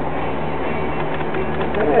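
Potter's wheel spinning with a steady hum while wet clay is worked by hand on it.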